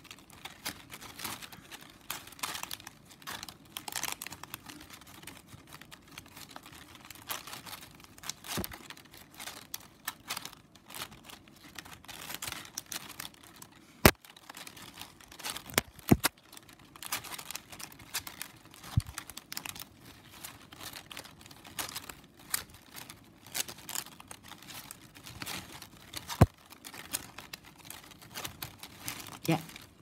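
Stiff plastic strapping band rustling and crinkling as the strips are slid and pulled over and under one another by hand while weaving, with three sharp clicks spread through it.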